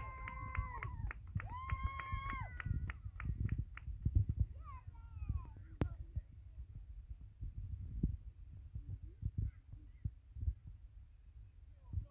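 Children's high-pitched cheering and shouts from the sideline right after a penalty kick, with quick clapping over the first few seconds that then dies down. A low wind rumble on the microphone runs underneath.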